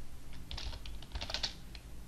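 Typing on a computer keyboard: a quick run of key clicks starting about half a second in and thinning out near the end.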